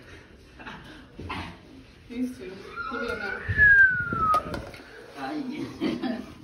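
Indistinct voices in a hallway. A short, high, squeal-like tone about three and a half seconds in rises and then falls over about a second, and is the loudest sound.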